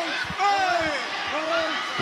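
Raised voices shouting from cageside over a run of dull low thuds, the sound of ground-and-pound punches landing on a fighter pinned to the mat.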